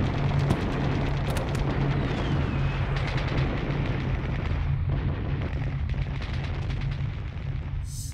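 Battle sounds: a dense, continuous din of rapid gunfire crackle and explosions over a steady low rumble, with a brief falling whistle about two seconds in.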